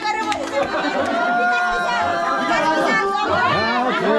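Many people talking over one another at once: overlapping, excited chatter from a small crowd of partygoers.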